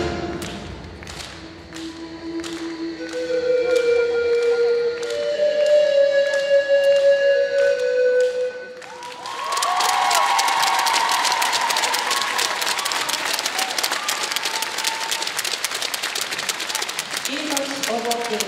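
Routine music with long held notes over a steady beat, which stops abruptly about nine seconds in. The audience then breaks into applause and cheering that lasts to the end.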